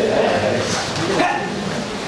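Short shouts and calls from many children's voices in a large, echoing training hall, over the general bustle of a group warming up.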